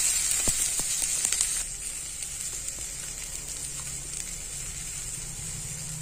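Chopped vegetables sizzling in hot oil in a frying pan as a wooden spatula stirs them, with a few light knocks of the spatula on the pan. The sizzle drops to a quieter, steady level about one and a half seconds in.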